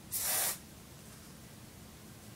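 Aerosol can of hairspray giving one short spray, about half a second long, just after the start.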